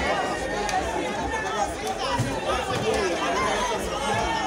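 An outdoor crowd of many people talking at once, a steady babble of overlapping voices with no single clear speaker.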